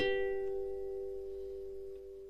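Background music: the last plucked note of a string phrase rings on and slowly fades, with no new notes.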